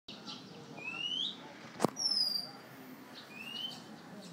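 Bird song: clear whistled phrases, each a rising whistle followed by a higher, falling whistle, heard twice. A single sharp click a little before two seconds in is the loudest sound.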